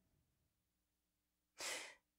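Near silence, then a short intake of breath near the end: a woman breathing in before she speaks again.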